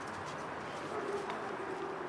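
Footsteps of a person and a dog shuffling through dry fallen leaves, a steady rustle with faint scattered clicks. A faint held tone comes in about halfway through and fades before the end.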